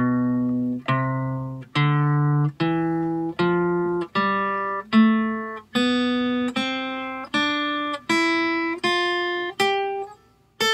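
Steel-string acoustic guitar playing the A minor scale in open position, one picked note at a time, climbing in pitch from the open A string up through the higher strings. The notes come evenly, about one every three-quarters of a second, each ringing until the next is picked.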